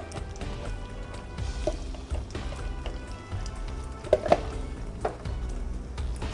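Thick chili being poured from a container into a pot of pasta and stirred in with a spoon, with a couple of short knocks about four seconds in, under soft background music.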